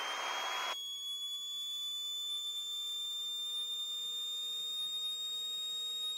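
Thin electrical whine in the Piper Warrior's intercom audio, slowly rising in pitch as the engine speed builds on the full-power takeoff roll, typical of alternator whine picked up in a headset feed. A hiss cuts off suddenly just under a second in.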